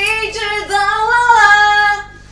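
A high-pitched voice singing long, wavering notes without accompaniment, cutting off abruptly at the end.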